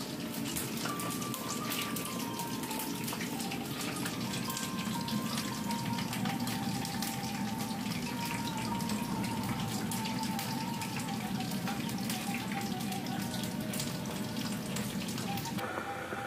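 Running water: a steady rushing noise with many small ticks, with faint music over it.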